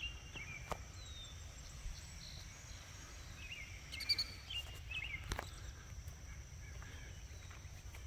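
Quiet rural outdoor ambience: a few faint bird chirps, most of them around four to five seconds in, over a steady faint high-pitched tone and a low rumble, with a couple of faint clicks.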